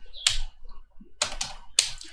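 Computer keyboard keystrokes as numbers are typed into spreadsheet cells: a few separate, uneven taps.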